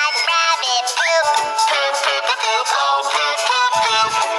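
A children's cartoon song: a high sung voice, processed to sound synthetic, over a musical backing, singing lyrics about animal poop.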